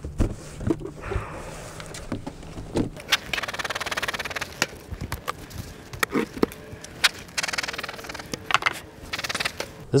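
Knocks, clicks and scrapes of wooden beehive covers being lifted off and set down as the hive is opened, with two stretches of hiss in between.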